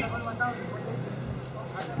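A pause in a man's speech, with a low outdoor background of faint steady hum and noise and a few faint distant voice fragments early on.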